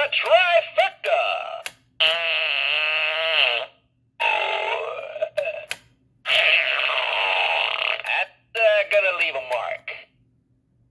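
Gemmy Animated Fart Guy novelty toy playing its recorded voice phrases and sound effects through its small built-in speaker, which gives a thin, tinny sound. The sound comes in about five bursts with short silences between them, two of them long and drawn out.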